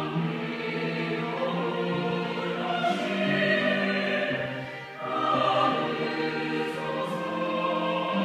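Mixed church choir singing a hymn in sustained phrases, accompanied by flute, violins and trombone. The sound dips briefly about five seconds in at a break between phrases, then the choir comes back in.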